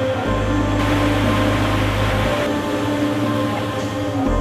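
Background music: slow, sustained chords over a low bass note that changes about every two seconds.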